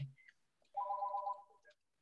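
A short electronic tone of several steady pitches sounding together, held for under a second, like a phone or computer alert.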